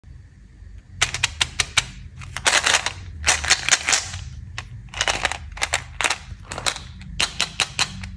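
A plastic chewing-gum bottle and candy packaging handled close to the microphone: after a quiet first second, quick runs of sharp plastic clicks and snaps, with denser crackling in the middle, then more scattered clicks.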